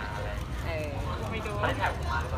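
A man speaking through a handheld megaphone, over a steady low rumble.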